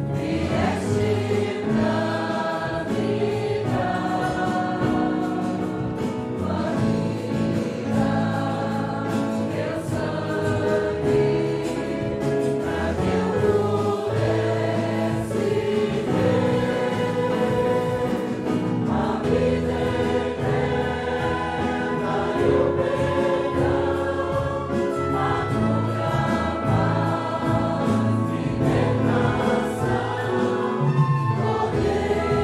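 A congregation singing a Portuguese-language hymn together, with live instrumental accompaniment and steady sustained bass notes underneath.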